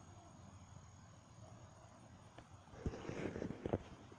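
Faint steady outdoor background, then about three seconds in, wind gusts buffet the phone's microphone with irregular crackling knocks and rumble.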